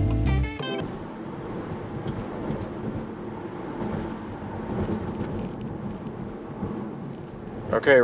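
Background music cuts off within the first second. Steady road and tyre noise from a Tesla driving at highway speed follows.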